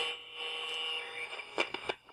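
Electronic sound effect: a buzzing tone with static that fades out over about a second, followed by a few short clicks near the end.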